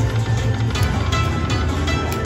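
Aristocrat Dragon Link Panda Magic slot machine playing its free-game bonus music and chimes as the reels spin and land, with a sharp clicking note about a second in, over a constant low hum.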